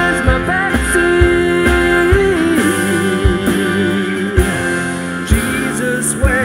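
A rock song playing, with guitar, drums and a singing voice. The kick drum thumps at uneven intervals under held, bending sung notes.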